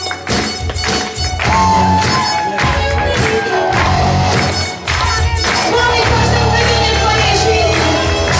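Live gospel worship band playing an upbeat song: electric guitar, bass and a steady driving beat, with singers leading the melody over amplified sound.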